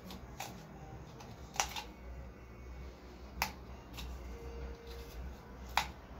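Hand carving tool working a coconut shell, the blade giving four sharp clicks at uneven intervals as it cuts into the hard shell.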